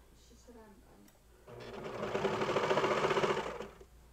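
Baby Lock Celebrate serger stitching a knit waistband seam in one short run: it speeds up about a second and a half in, runs briefly at full speed, and stops just before the end.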